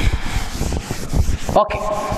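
Cloth duster rubbing back and forth across a chalkboard, erasing chalk: a continuous scrubbing rub.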